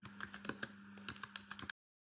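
Faint computer-keyboard typing sound effect, a quick run of about a dozen irregular key clicks over a low steady hum, cutting off suddenly near the end.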